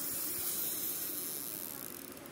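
Daiwa Whisker spinning reel cranked, a smooth, even whir of its gears and rotor that fades away slowly: the sign of a light, smooth-running reel.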